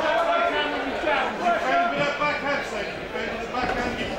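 Voices calling out and talking over one another, without a break.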